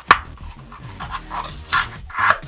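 A pencil point punching through the bottom of a paper cup with one sharp pop just after the start, then the scratchy rub of paper against the pencil as it is pushed and worked through the hole.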